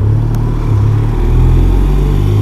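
BMW R1200RT motorcycle's boxer twin accelerating hard with two people aboard, its engine note holding and then briefly breaking and stepping a few times as it shifts up through the gears.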